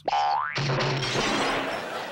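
Cartoon spring sound effect as coil-spring gadget legs shoot upward: a quick rising boing in the first half-second, then a steady rushing noise.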